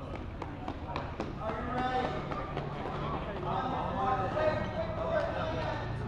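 Soccer balls thudding on a hard indoor court floor, a run of knocks in the first two seconds, with children's and adults' voices throughout.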